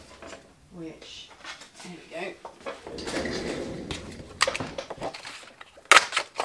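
Craft tools and card being handled on a desk, with scattered clicks and rustles, ending in a sharp knock near the end as a two-inch circle paper punch is set down. Faint murmured voice sounds come earlier.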